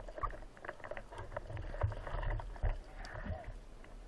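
Water sloshing and splashing around a speargun-mounted underwater camera as the gun moves at the surface, with irregular knocks and low thumps.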